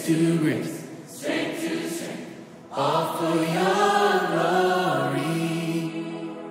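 A group of voices singing together like a choir in two sustained phrases, with a quieter dip between them in the first half.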